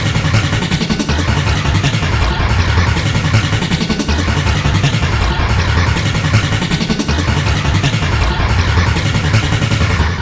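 A loud, dense wash of many overlapping edited audio clips stacked on top of one another, with a throbbing low end and no clear words.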